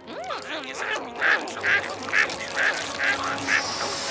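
Cartoon gum-chewing sound effect: a run of wet, squelchy smacks about twice a second, after a few short sliding tones in the first second.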